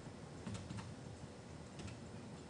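A few faint, scattered key clicks over low room noise.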